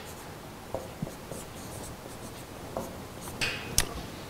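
Marker pen writing on a whiteboard: light scratching strokes and taps, with a longer scratchy stroke and a sharp click near the end.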